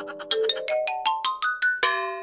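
Cartoon sound effect: a quick rising run of about a dozen short, bell-like notes climbing in pitch, ending in a held chord near the end.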